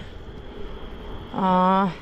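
Steady wind and road noise from riding a bicycle, a low rushing rumble on the microphone with no distinct events.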